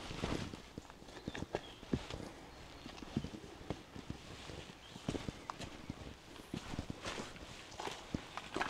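Footsteps of someone walking along a rocky dirt trail: irregular knocks and scrapes of feet on stone and grit.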